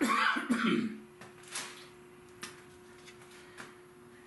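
A man coughs for about the first second. After that there is only a faint steady hum, with a few light clicks.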